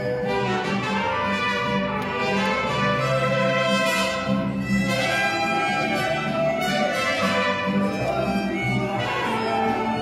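Mariachi band playing a song, violins and trumpets together over a steady accompaniment.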